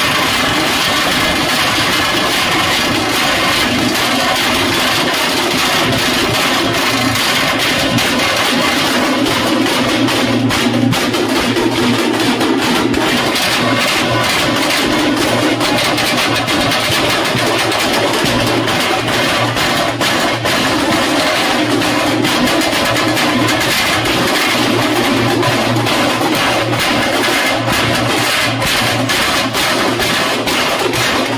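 Live Veeragase folk accompaniment: drums beaten rapidly and without pause with sticks, over a steady held pitched tone.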